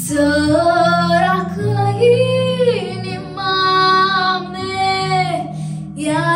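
A girl singing a Romanian folk song into a microphone, drawing out long, ornamented notes that bend and slide in pitch, over a steady low accompaniment.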